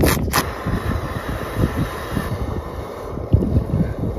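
Wind buffeting the microphone in a steady, gusting low rumble, with a brief crinkling of a foil freeze-dried meal pouch being handled in the first half-second.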